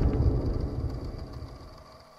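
The low rumbling tail of an intro sting's boom, fading away steadily over about two seconds, with a faint thin high tone.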